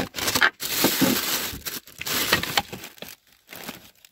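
Rummaging by hand through a plastic crate of junk: irregular rustling and clattering of tools, plastic bags and hard objects being shifted, easing off near the end.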